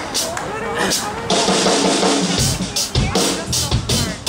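Live band's drum kit starting up, with kick drum, snare and cymbal hits growing louder from about a second in and a steady kick beat joining halfway through; a voice talks over the PA in the first second.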